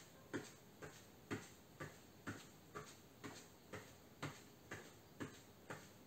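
Faint footsteps of a person marching in place in socks on an exercise mat: soft thuds in a steady rhythm of about two a second.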